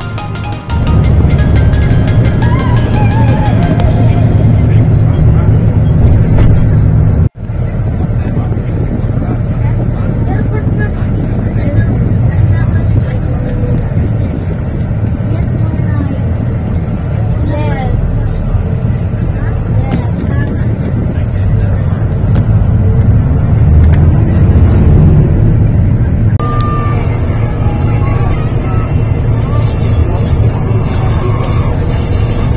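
Steady low rumble of a moving bus, engine and road noise, with music and some voices over it. The sound cuts out for a moment about seven seconds in.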